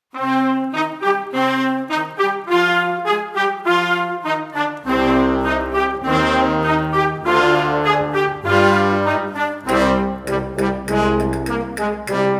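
Concert band playing a Spanish paso doble, led by brass, starting abruptly out of silence; deep bass notes join about five seconds in.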